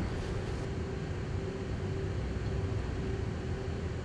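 Steady low rumbling background noise with a faint hum.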